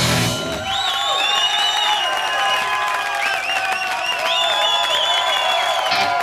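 Live hard rock band: the drums and bass stop about half a second in, leaving sustained, wavering high notes over audience cheering and clapping.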